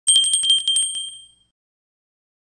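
A small bell rung in a rapid trill of about eight quick strikes, its clear ringing tone fading out by about a second and a half in.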